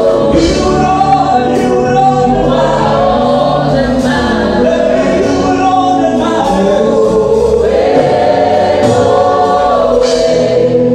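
Gospel worship song: a woman singing lead into a microphone, with other voices joining in and steady low accompaniment beneath, continuous and loud.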